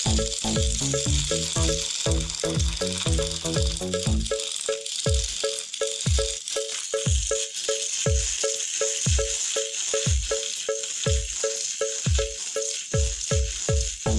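Small electric motors of battery-powered plastic toy trains whirring and rattling steadily as two engines strain against each other, over background electronic music with a steady kick-drum beat.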